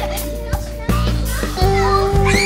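Young children's voices calling out and laughing at play, a few short high shouts, over background music with long held notes.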